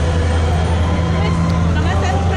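A steady low-pitched motor drone, holding one pitch, under faint background talk.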